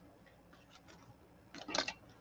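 Faint light taps, then a brief burst of rustling near the end as paper and lace are handled on a work table.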